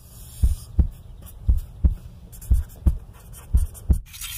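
A heartbeat sound effect: low double thumps, lub-dub, about one beat a second, over a low hum.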